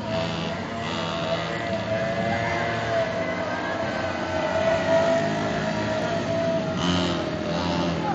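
Small engines of children's mini ATVs running on a small track, with music playing in the background.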